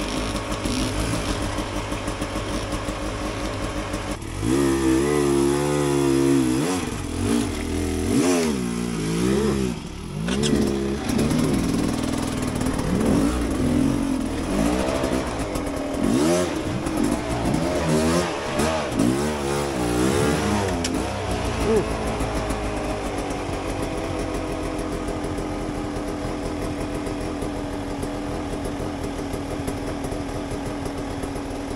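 Two-stroke Beta 300 enduro dirt bike engine, blipped again and again, its pitch rising and falling in short revs as it is worked up rock ledges at low speed. It settles to a steady low run for the last several seconds.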